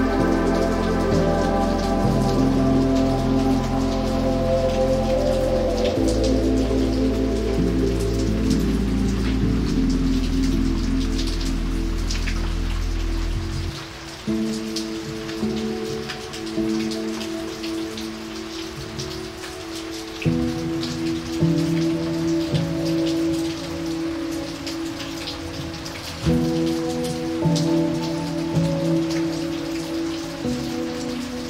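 Steady rain falling on wet pavement, with slow, sustained chords of calm music underneath. A deep bass note drops out about halfway through, and after that the chords change every few seconds.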